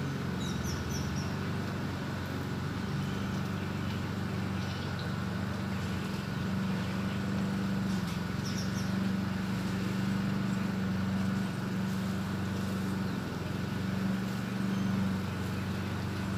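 A car engine idling with a steady low hum, with a few brief bird chirps about half a second in and again about eight and a half seconds in.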